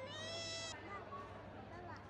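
A young child's short, high-pitched squeal, about half a second long near the start, over a faint background murmur of shoppers.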